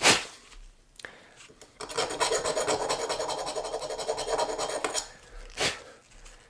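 Brass brush scrubbing the bare die-cast van body in rapid back-and-forth strokes for about three seconds, with a short knock at the start and another near the end.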